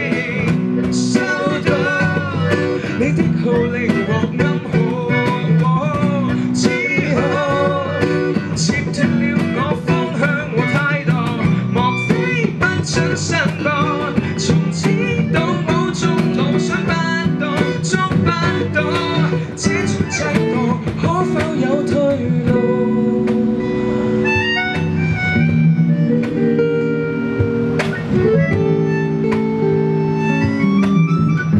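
A small live band playing unplugged: singing over strummed acoustic guitar, electric bass, cajon and keyboard. About two-thirds of the way through, the singing drops out into an instrumental passage of long held keyboard notes.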